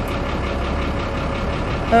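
A large vehicle engine idling steadily, with a low, even pulsing.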